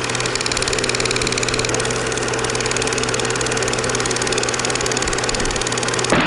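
Fast, even mechanical clattering over a steady hum, like a small machine running continuously.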